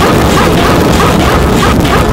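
Deliberately overdriven, heavily distorted audio played at full loudness, an 'ear-rape' punishment sound: harsh noise across the whole range with a short sound looped about three times a second.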